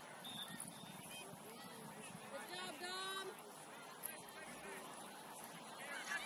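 Faint, distant voices of players and spectators at a soccer match, with a single longer shouted call about two and a half seconds in.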